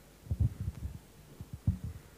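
Handling noise of a handheld microphone being set back into its stand: a handful of low, dull thumps and bumps over about a second and a half.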